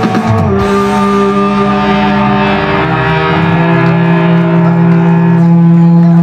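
Live rock band: the drums stop about half a second in and the electric guitars and bass ring on in one long held chord, whose low note drops lower about three seconds in, typical of a song's closing chord.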